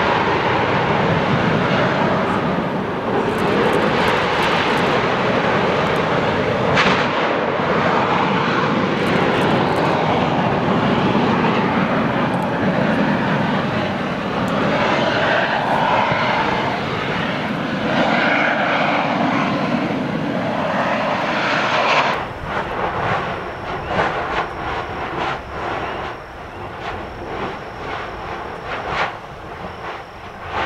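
Lava fountaining at a Kilauea fissure: a loud, steady rushing noise of magma and gas jetting from the vent. About 22 seconds in it changes suddenly to a quieter, uneven spattering with many sharp clicks.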